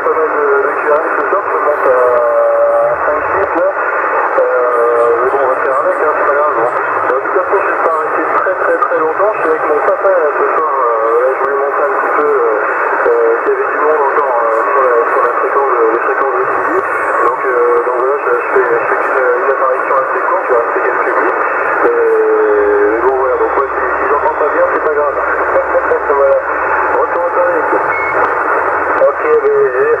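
Another station's voice received over CB channel 27 in upper sideband, coming through a Yaesu FT-450 transceiver's speaker: talk that runs on without a break, thin and narrow-band, as single-sideband radio sounds.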